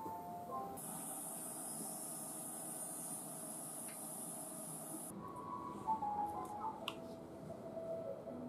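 Dental micromotor handpiece with a bur grinding a temporary crown: a steady, high-pitched hissing whine that starts about a second in and stops suddenly about five seconds in, over faint background music.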